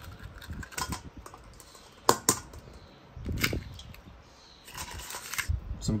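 A raw egg knocked sharply against a stainless steel mixing bowl and cracked open, the single loudest crack about two seconds in. Lighter clicks, taps and soft handling noises come before and after it.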